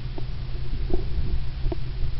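A jogger's footsteps on grass heard through a body-worn camera: a steady low rumble from the camera being jostled and buffeted as it is carried, with a short knock a little more than once a second as the runner strides.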